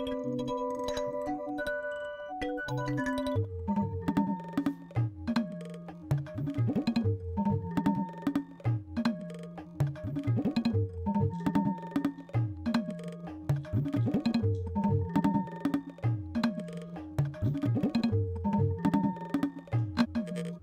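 Granular audio output of an Empress ZOIA pedal's two-module granular comparator patch: sustained pitched tones for about three and a half seconds, then a looping tabla pattern broken into grains, with pitched low strokes and some gliding notes, repeating in a fast rhythm.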